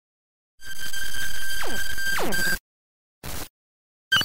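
Electronic logo sound effect: a held high tone for about two seconds, crossed by two falling swoops, cutting off sharply and followed by a short blip.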